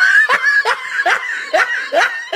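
A person laughing in a quick run of short ha-ha sounds, each rising in pitch, about three a second.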